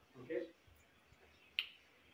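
A single short, sharp snap about one and a half seconds in.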